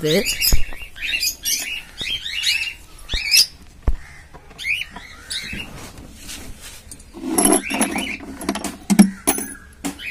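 Cockatiels chirping repeatedly in short call notes, with a few sharp clicks in between.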